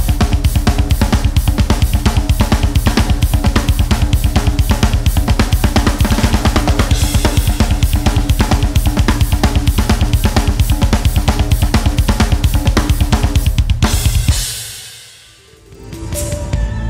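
Drum kit playing a fast double bass groove: a steady stream of rapid bass drum strokes from a double pedal under hi-hat and accented snare hits. About fourteen seconds in the drumming stops and a cymbal rings out and fades.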